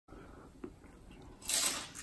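A bite into a crisp tortilla chip topped with shrimp aguachile: one short crunch about one and a half seconds in.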